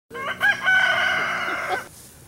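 A loud animal call of a few short gliding notes followed by one long held note of about a second, cut off abruptly just before the end.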